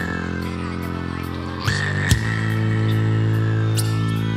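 Rock band playing live in a passage with no singing: a held, droning chord of electronic synth and bass, with a high tone sliding slowly down. The chord is re-struck about two seconds in.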